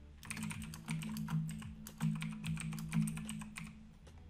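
Typing on a computer keyboard: a quick, irregular run of key clicks as a short sentence is typed, with low background music underneath.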